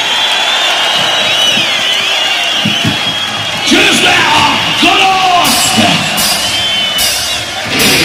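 Live rock concert: a singer yelling and bellowing into the microphone over steady crowd noise with high wavering tones, then a few cymbal crashes in the second half as the band gets ready to play.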